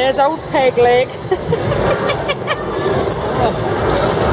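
Busy amusement arcade hubbub: a voice in the first second, then a steady background of crowd chatter and machine noise, with a few sharp clicks around the middle.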